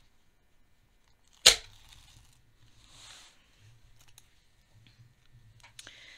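Adhesive tape peeled off fabric: one sharp, loud rip about one and a half seconds in, followed by softer rustling of tape and fabric being handled.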